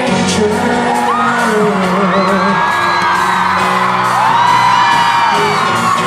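Live pop-rock band playing with singing in a large hall, while audience members whoop and scream over the music with high, gliding voices.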